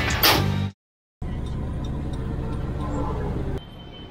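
The last moment of an intro jingle, cut off into a brief dropout, then about two and a half seconds of steady vehicle engine and road noise that gives way near the end to quieter background sound.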